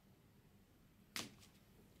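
Near silence: faint room tone, broken a little after a second in by one short, sharp noise that dies away quickly.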